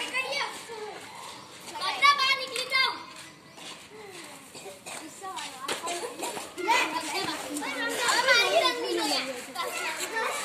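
Children's voices calling and chattering as they play outdoors, with shrill shouts about two seconds in and again near the end.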